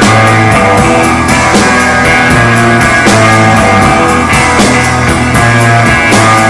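A rock band playing an instrumental live: electric guitar, bass and drum kit, with drum hits at an even beat of about three a second under held bass notes.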